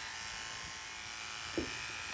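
Cordless horse clippers, a Wahl Stable Pro Plus, running steadily with an even high buzz.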